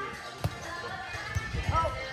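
A volleyball struck by a hand: one sharp smack about half a second in, over background music and players' voices, with a brief shout near the end.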